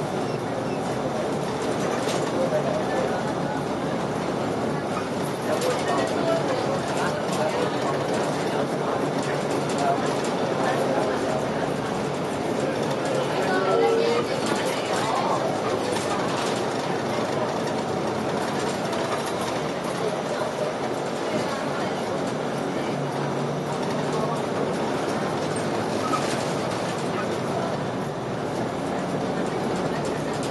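Inside a King Long KLQ6116G city bus on the move: steady engine and road noise with a few short knocks and rattles from the body, and indistinct talking among the passengers.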